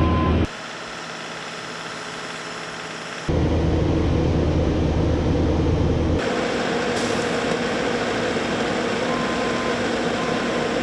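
Bobcat skid-steer loader's diesel engine running, in several cut-together stretches: quieter from about half a second in to about three seconds, then louder. A reversing beeper sounds briefly near the end.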